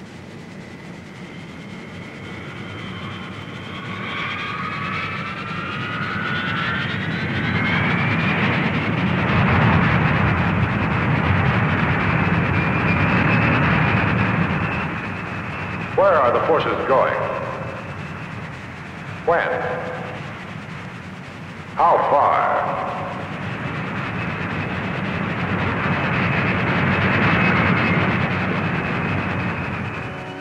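Jet engines of a four-engine jet transport, a C-141 Starlifter, running loud. The sound swells over the first several seconds with a rising whine, then holds steady. Three short, loud voice-like bursts break in near the middle.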